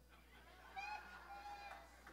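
A faint, high-pitched voice off the microphone, a brief vocal reaction from someone in the audience, heard for about a second in the middle over otherwise quiet room tone.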